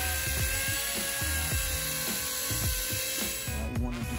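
Cordless drill spinning a 500-grit sanding disc dry against a hazy plastic headlight lens: a steady motor whine with the hiss of abrasive on plastic, cutting off shortly before the end. Background music plays underneath.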